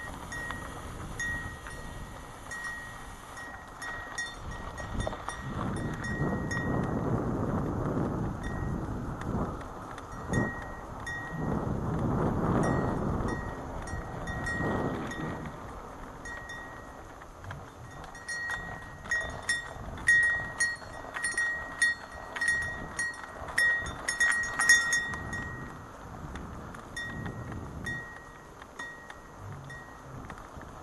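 Bicycle ride heard from a helmet camera: wind rushing over the microphone, swelling twice with speed, under light metallic clinks that ring with a clear tone, repeating through the ride and coming thicker and louder over bumps in the second half.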